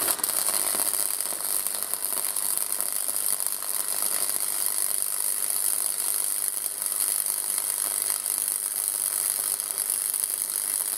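Flux-cored wire welding arc from a Parkside PFDS 120 A2 gasless welder, crackling steadily without a break as it welds steel.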